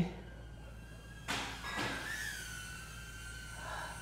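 DJI Avata FPV drone's propellers whining in flight nearby. A rush of air noise comes about a second in, then a steady high whine with a slight waver that holds on.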